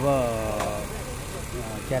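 A man's drawn-out spoken word falling in pitch, then a steady low hum of an idling engine that runs on underneath.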